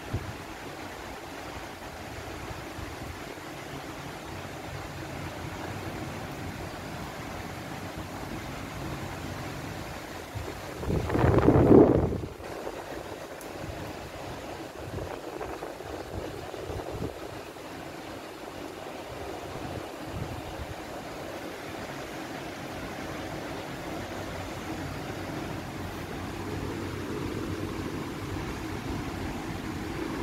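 Torrential wind-driven storm rain, a steady rushing hiss, with one louder rush lasting about a second around eleven seconds in.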